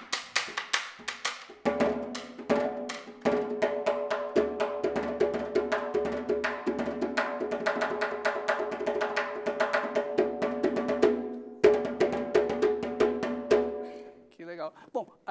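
Candombe repique drum played with a stick and a hand: it opens with a quick run of sharp wooden clicks of the clave pattern struck on the shell. From about a second and a half in it moves into busy strokes on the head that ring with clear tones, with a short break a couple of seconds before the end.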